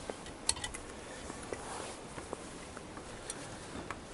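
A hacksaw clinking and scraping against a bank of corroded Kawasaki ZX-6R carburettors as it is set against a stuck screw to cut a screwdriver groove. A few sharp metallic clicks with light scraping between them.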